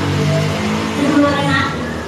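A person's voice, briefly at the start and again about a second in, over a steady low hum.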